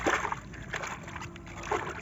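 Water sloshing and splashing as a small plastic toy figure is swished back and forth in a shallow stream to wash off mud.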